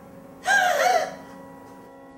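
A woman's short, high-pitched cry of anguish, starting about half a second in and lasting about half a second, its pitch wavering.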